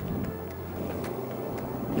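A Peugeot 206 RC's 2.0-litre four-cylinder engine running at idle, under background music.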